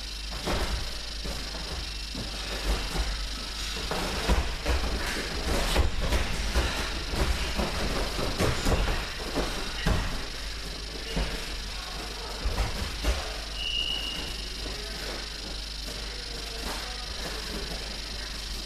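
Two wrestlers in jackets grappling on a gym mat: irregular scuffs, shuffles and thumps of feet on the mat as they grip and push, busiest in the middle stretch.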